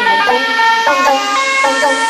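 Vinahouse dance music in a breakdown: a pitched lead melody steps and glides between notes over a rising noise sweep, with no bass or kick drum.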